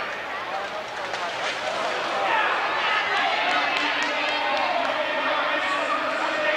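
Indistinct voices and crowd din echoing in a large arena, with a few sharp clicks.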